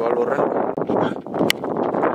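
A cricket bat striking a tennis ball: one sharp crack about one and a half seconds in, over a steady background of spectators' voices and wind on the microphone.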